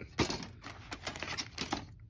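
Plastic model-kit parts trees (sprues) clattering and clicking against each other as they are handled, a quick run of clacks with one sharp clack just after the start, stopping near the end.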